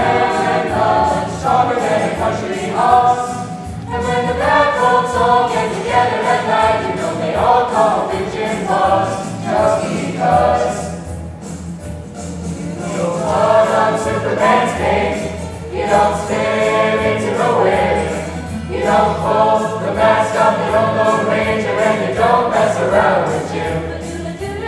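Mixed high school chamber choir singing a choral arrangement of pop songs, in phrases that swell and fall back, with a softer passage a little before the middle.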